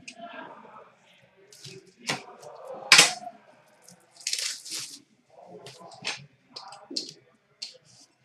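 A sealed pack of trading cards being torn open and handled: irregular tearing and crinkling with sharp snaps, the loudest about three seconds in, and a short hissing tear a little after the middle.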